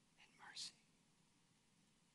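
Near silence, broken about half a second in by a short whispered word or breath from a man close to the microphone, ending in a hiss.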